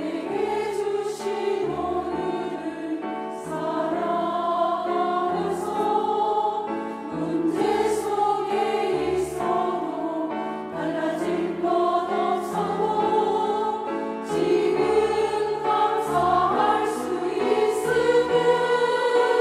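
A women's church choir singing a hymn in Korean, sustained phrases that carry on without a break.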